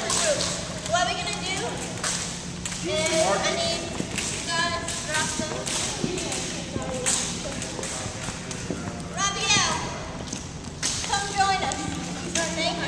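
Scattered sharp slaps of long jump ropes hitting a wooden gym floor, at irregular times, over indistinct voices in the hall and a steady low hum.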